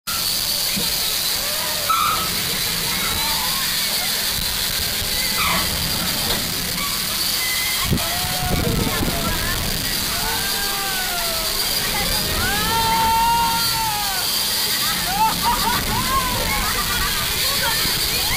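Steady rushing noise of a children's roller coaster train running on its track. Over it, riders' high voices call out in rising-and-falling cries several times from about eight seconds in.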